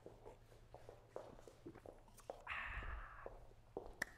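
Faint footsteps on a wooden studio floor with small scattered knocks, as cups are carried off and handed over, and a short hiss a little past the middle.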